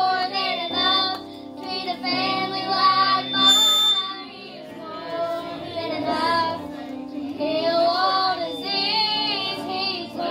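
Young female voices singing a gospel song with wavering vibrato over held low accompanying notes; the singing dips quieter briefly around one and a half and four and a half seconds in.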